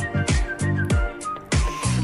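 Instrumental pop backing track with an electronic kick drum about three beats a second, a bass line, and a high, whistle-like lead melody stepping downward.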